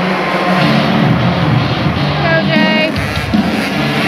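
Several youth 50cc motocross bikes running at high revs, their high-pitched engine note holding and then rising and falling as the riders work the throttle while the pack comes past. This sits over a steady arena din.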